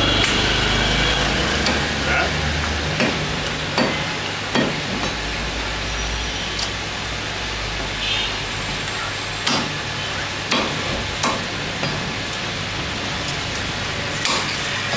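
Meat cleaver chopping beef on a wooden chopping block: sharp chops about a second apart, in two runs with a pause of several seconds between them. A low rumble sits underneath at times.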